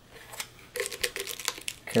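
Reflectix foil-bubble insulation and tape crinkling under the fingers as a tape strip is pressed down around the edge of a can, a run of small crackles and clicks.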